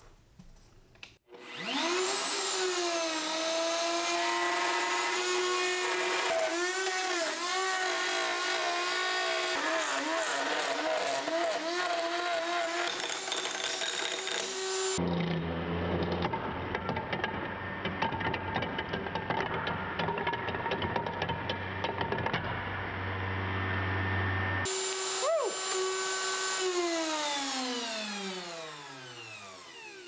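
Table-mounted electric router with a bearing-guided flush-trim bit routing a hole in thick plastic. The motor spins up about a second in, and its pitch wavers and dips as the bit cuts, with a rougher stretch in the middle. Near the end it is switched off and winds down, its pitch falling away.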